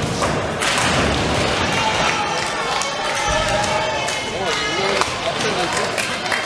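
Nine-pin bowling hall: many voices talking at once over the thuds and clatter of balls and pins on the lanes, with a louder burst of clatter about a second in.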